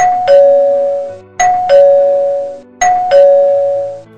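Two-tone 'ding-dong' doorbell chime rung three times in quick succession, a high note then a lower one each time, about a second and a half apart, ringing insistently.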